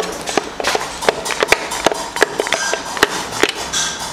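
Irregular light metallic clicks and knocks, about three or four a second, from the metal parts of a stripped-down engine block being handled.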